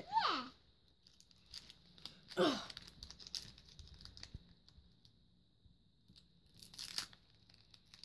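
Foil wrapper of a Pokémon card booster pack crinkling and crackling as small fingers pick and pull at it, with a louder short tearing rip about seven seconds in as the hard-to-open pack finally gives.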